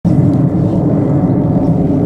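Four-engined Boeing 747 freighter passing overhead, its jet engines giving a steady low rumble.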